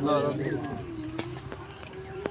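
Birds calling: a dove cooing in a low, wavering tone, with a short high chirp from a small bird.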